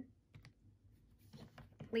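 Plastic keys of a Sharp desktop calculator being pressed: a few faint clicks, then a quicker run of taps in the second half as a subtraction is keyed in.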